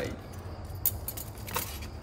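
Light clicks and clinks from small metal parts of a handheld battery spot welder and its accessories being handled. The two sharpest clicks come just under a second in and again about half a second later.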